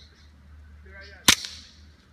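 A single sharp, shot-like crack about a second and a quarter in, with a short ring-out after it.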